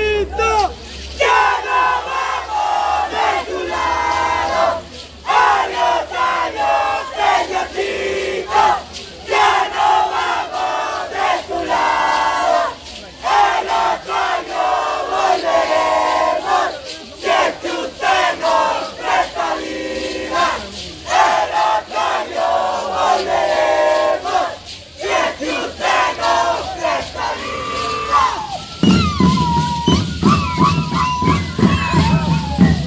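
A group of voices shouting and calling in unison in short phrases of a second or two with brief breaks, the ritual cries of Shacshas dancers. Just before the end a band with drums comes in.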